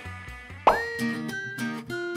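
Background music: the earlier track fades out, and about two-thirds of a second in a short rising pop sound effect leads into a light tune of plucked notes.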